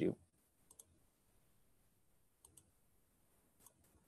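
Faint computer mouse clicks, a few single clicks spread about a second or more apart.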